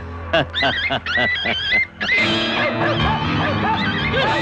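Dogs yelping and whining in quick, short, wavering cries, several a second, over background film music.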